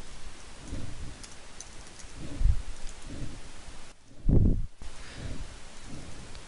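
Steady microphone hiss with a few soft, low thumps, the loudest about four seconds in.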